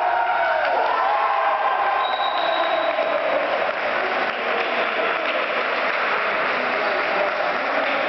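Steady, echoing din of an indoor sports hall during a five-a-side football game, with raised voices near the start.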